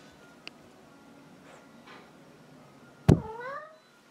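A long-haired tabby cat gives one short meow about three seconds in. It starts abruptly and rises in pitch.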